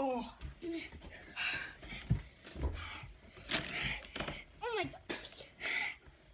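A boy's wordless pained sounds: falling moans and sharp, hissing breaths, a reaction to the burn of spicy food in his mouth.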